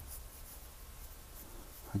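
Faint scratching of a pen nib on paper as short hatching strokes are drawn to build up texture.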